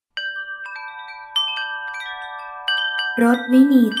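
Chimes ring out in a cascade of clear, sustained tones, struck afresh several times and left to ring on. A voice starts reading over them near the end.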